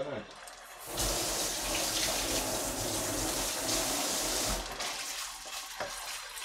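Chunjang (black bean paste) frying in hot oil in a pan, sizzling loudly from about a second in as a wooden spatula stirs it, easing off after a few seconds.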